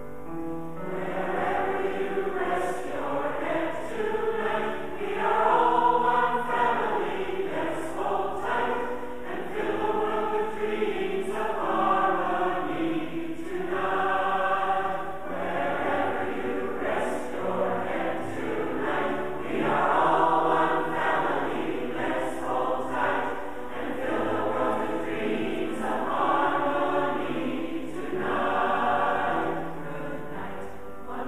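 Large mixed-voice community choir singing in harmony, coming in about a second in and swelling into louder phrases several times.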